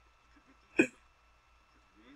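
A single brief hiccup-like vocal sound about a second in, amid near silence.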